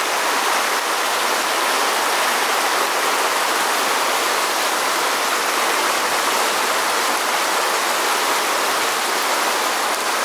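A small, fast river rushing over rocks through a white-water riffle, a steady, even rush of water.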